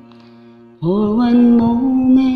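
Karaoke backing track playing softly. About a second in, a woman's voice comes in, sliding up into one long held note.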